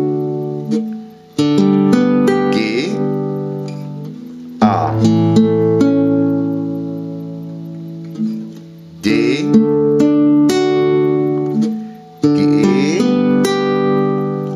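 Nylon-string classical guitar played slowly, one chord after another (D major, G major, A major in turn), each chord plucked note by note from the D string upward and left ringing. A new chord starts about every three to four seconds, with a short dip at each change.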